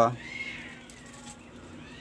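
The end of a spoken word, then a faint animal call in the background: one call that rises and falls in pitch.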